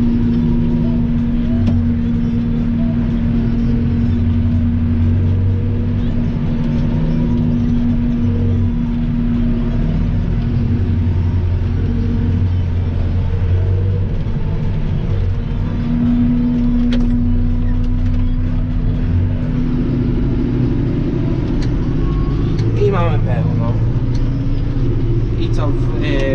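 Massey Ferguson tractor engine running steadily under load, heard from inside the cab while it tows a manure spreader beside a forage harvester at maize silage harvest.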